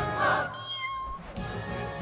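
Song from an animated film: the singing ends about half a second in, a cartoon kitten gives a short meow over high thin tones, and the music starts up again.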